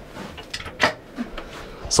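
A small wooden cupboard door being opened by hand, with one sharp click a little before a second in and a softer knock after it.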